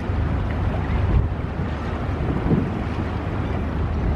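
Low, steady rumble of a seagoing cargo ship's engine as the ship moves slowly past at close range, mixed with wind buffeting the microphone.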